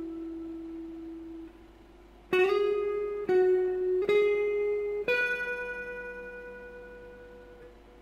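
Clean electric guitar, a Stratocaster-style guitar with Fender American Standard pickups, playing single picked notes of a melodic intro. A held note fades and stops about a second and a half in. After a short pause, four notes are picked about a second apart, and the last one is left to ring and fade away.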